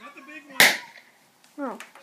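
A string-pull party popper going off: a single sharp pop about half a second in.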